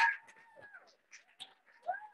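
Audience applause fading quickly in the first moment, leaving scattered claps and a few faint high calls from the crowd.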